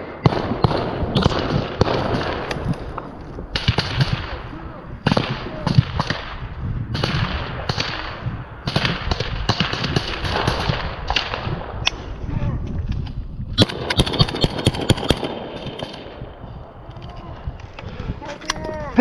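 Small-arms gunfire: scattered single shots and short automatic bursts at irregular intervals, with a denser run of rapid shots about three quarters of the way in.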